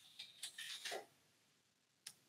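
A few faint clicks in the first second, then the sound cuts off to silence.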